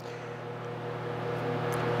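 A steady low mechanical hum with a rushing noise that grows gradually louder.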